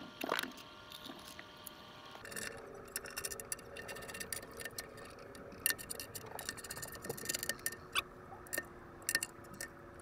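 Scattered light clicks and taps of small hardware being handled and fitted at a stainless steel sea chest, with a faint steady hum starting about two seconds in.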